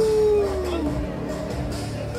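A long howl that slides slowly down in pitch and ends about a second in, over music and crowd noise.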